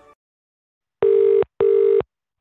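British telephone ringing tone heard by the caller: after a silent first second comes one double ring, two short bursts of a steady low tone with a brief gap between them. It is the sign that the called line is ringing at the other end.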